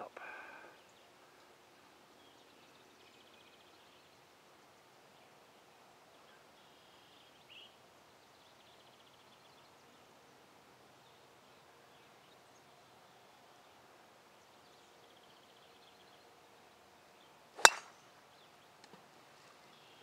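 A golf driver striking a teed-up ball: one sharp crack near the end, the only loud sound against near silence outdoors.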